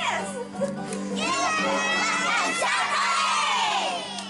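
A group of young children shouting and singing along over playing music, many voices together, swelling from about a second in.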